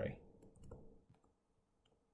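Faint, scattered clicks and taps of a stylus on a touchscreen as a word is handwritten, mostly in the first second.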